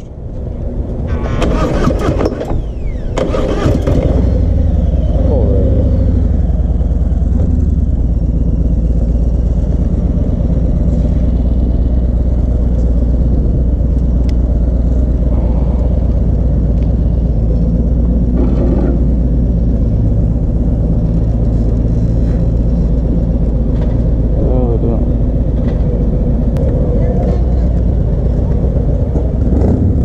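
Harley-Davidson V-twin motorcycle engine starting in the first few seconds, then running with a low, steady rumble close by.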